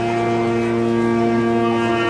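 Saxophone quartet, a baritone saxophone underneath three smaller saxophones, holding a sustained chord.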